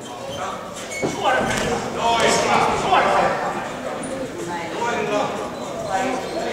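Shouting voices of coaches and spectators during an amateur boxing bout, with short knocks from the boxers' gloves and footwork in the ring mixed in. The shouting is loudest from about a second in to the middle.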